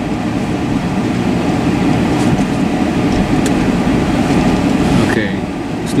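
Car running along at low speed, engine and road noise heard from inside the cabin, steady throughout.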